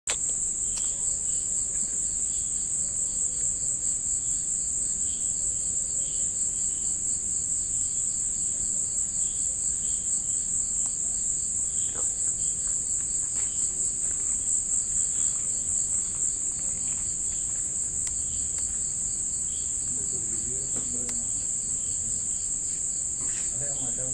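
Crickets trilling continuously: one steady, high-pitched, fast-pulsing chorus.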